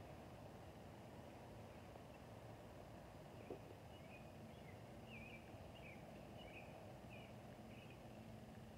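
Quiet backyard ambience with faint birds chirping in short repeated notes from about halfway in, and one faint tick a little before that.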